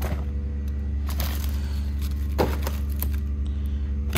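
Steady low engine drone of a septic pumping truck, with a few short rustles and knocks of frozen food packages being moved in a chest freezer.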